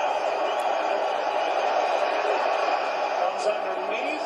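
Television broadcast of an NFL game playing in the room: steady stadium crowd noise, with faint commentators' voices near the end.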